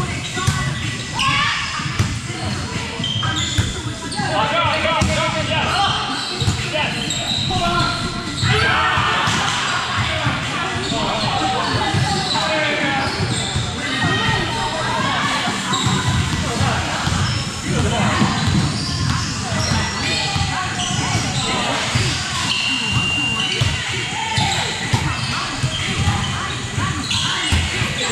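A volleyball being struck and bouncing on a gym floor, with repeated sharp hits echoing in a large hall amid players' chatter and calls.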